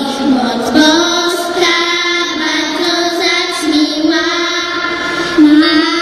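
Young girls singing a Polish Christmas carol into stage microphones, a melody of long held notes with short slides between pitches.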